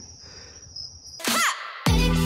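Steady high-pitched chorus of night insects in a cypress swamp. About a second in, a brief falling swoop cuts through it, and music starts near the end.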